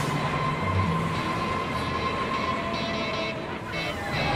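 Roller coaster train rolling along its steel track: a steady rolling noise with a faint constant whine, easing off slightly near the end.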